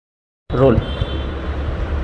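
Silence, then about half a second in the sound cuts in abruptly with a short clipped word from a man, followed by a steady low background hum.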